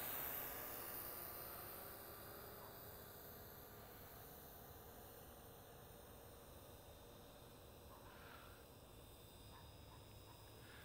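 Near silence: a faint hiss that fades away over the first few seconds.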